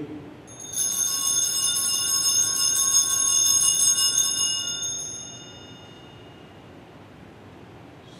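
Altar bells shaken at the elevation of the chalice during the consecration: a bright, high jingling that starts about a second in and dies away by about five seconds, leaving quiet room tone.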